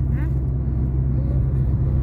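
Steady low rumble of a car's engine and tyres heard from inside the cabin while driving along a road. A brief falling tone sounds about a quarter second in.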